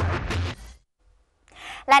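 The end of a film clip's soundtrack, a dense noisy din of voices over a low hum, cuts off about half a second in. After about a second of dead silence, a woman starts speaking near the end.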